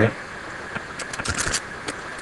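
Computer keyboard being typed on: a quick, irregular run of key clicks, including backspacing over a typo.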